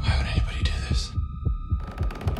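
Horror-film soundtrack: a low pulse beating about four times a second under a steady high tone, with a hiss that fades out about a second in.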